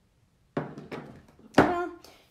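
A few knocks of a clear acrylic stamp block with a mounted rubber stamp being set down and handled on the craft table, the loudest a sharp thunk about one and a half seconds in.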